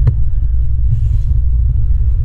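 A steady low rumble, with one sharp click just after the start as the recessed pull latch of a carpeted boat deck hatch is lifted.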